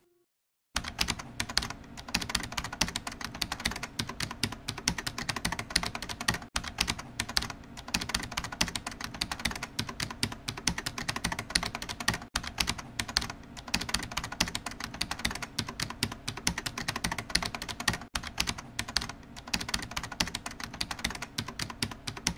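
Rapid, continuous clicking, starting just under a second in and breaking off briefly about every six seconds.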